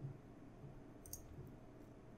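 A few faint computer-mouse clicks, the clearest right at the start and another just past a second in, as anchor points are placed with GIMP's Paths tool.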